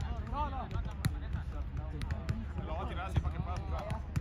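A football being kicked and volleyed between players: a few sharp thuds of boot on ball, about a second apart, over men's voices chattering and calling.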